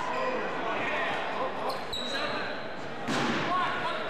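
Voices of players and spectators echoing in a gymnasium, with a short high whistle blast about two seconds in and a loud thud a second later.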